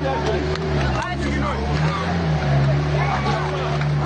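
Pickup truck engine running with a steady low drone, under a crowd of people talking.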